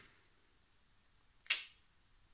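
Near silence, then a single short, sharp finger snap about one and a half seconds in.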